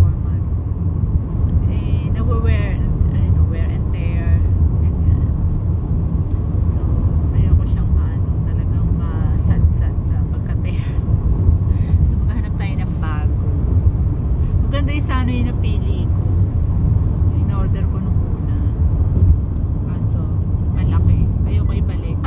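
Road and engine noise inside a moving car's cabin: a steady low rumble, with a woman's voice talking at times over it.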